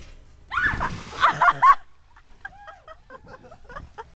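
A splash as a person jumps feet-first into a pool through a stack of inflatable inner tubes, with loud shrieks and yells over it for about a second, followed by quieter short cries and voices.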